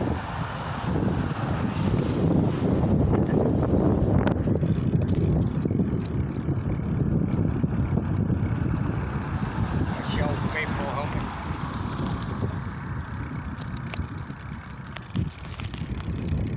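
Wind rushing over a phone microphone and road noise while riding a bicycle along a street, loudest a couple of seconds in and easing off later.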